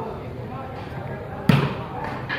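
Background chatter of spectators, then about a second and a half in a single sharp, loud slap of a hand striking a volleyball.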